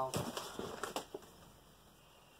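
Gloved hands handling a jar and food cans over a paper bag: a few short rustles and light knocks in the first second, then only faint handling noise.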